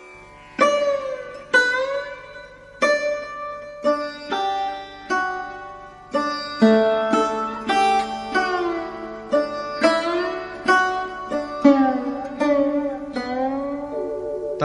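Instrumental Indian classical music: a solo plucked string instrument playing a slow melodic phrase of single plucked notes, several bent in pitch, over a steady low drone.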